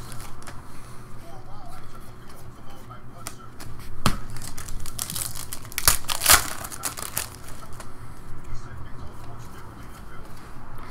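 Foil trading-card pack crinkling and tearing as it is ripped open by hand, with sharp crackles of the wrapper about four seconds in and again around six seconds.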